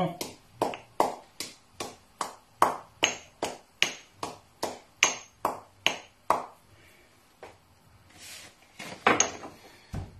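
Pestle pounding seeds in a small hand-held mortar: sharp, even strikes about three a second for some six seconds, then a pause, and two more strikes near the end.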